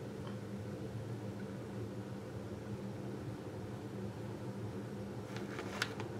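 Quiet room tone: a steady low hum with a faint hiss, and a couple of faint brief sounds near the end.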